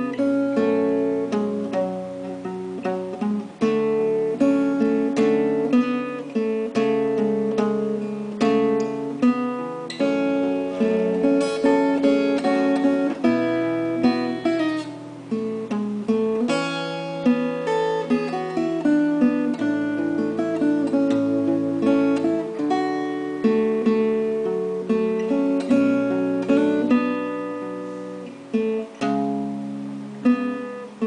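Solo acoustic guitar with a capo, plucked: a melody line over bass notes and chords, note after note without pause, dying away briefly near the end.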